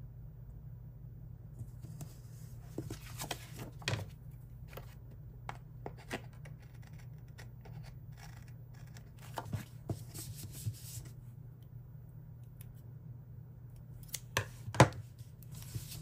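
Small scissors snipping paper and sticker stock, a few scattered snips with paper rustling, the loudest a sharp snap near the end.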